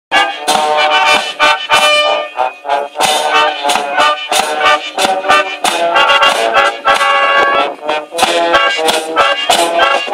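Marching miners' brass band playing a march: clarinets, trumpets and tuba carry the tune over repeated bass drum beats.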